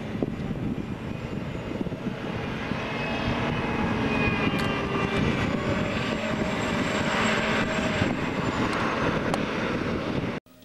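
Caterpillar Challenger rubber-tracked tractor driving and turning on pavement: its diesel engine runs steadily, with a faint whine over it that shifts a little in pitch.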